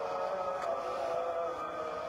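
A muezzin's voice chanting the dawn adhan, holding one long melismatic note that slides slowly in pitch and shifts about a second and a half in.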